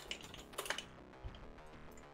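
A few computer keyboard keystrokes, most in the first second and a couple more near the end, over faint music playing from the music visualizer.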